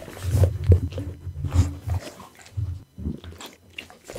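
Pit bull licking and chewing close to the microphone: wet mouth noises in irregular clusters, with short quieter pauses between them.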